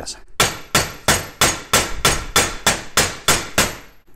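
Claw hammer striking a mineral-insulated copper-clad (pyro) cable laid on steel vice jaws, about eleven quick, evenly spaced blows at roughly three a second, flattening the round copper-sheathed cable.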